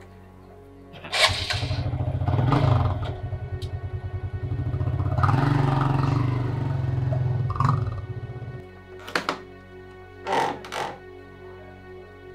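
Motorcycle engine running as the bike rides off, with a fast low firing pulse that comes in sharply about a second in and stops about eight and a half seconds in. Background music plays under it.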